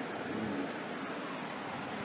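Steady background hiss and room noise in a pause between spoken sentences, with a faint voice briefly about half a second in.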